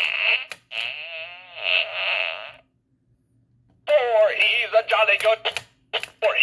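Gemmy Animated Fart Guy novelty toy playing its recorded voice and sound effects through its small built-in speaker. It sounds in two stretches, with a pause of about a second in the middle.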